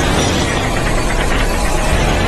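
Film soundtrack: a loud, steady, dense rumble of sound effects with music underneath.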